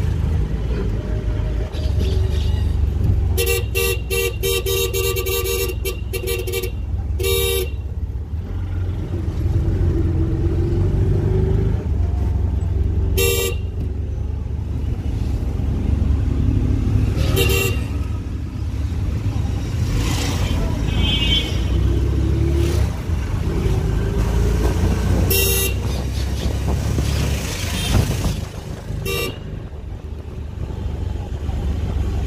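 Street traffic: a steady low engine and road rumble with vehicle horns, a rapid run of short honks a few seconds in, then single toots now and again.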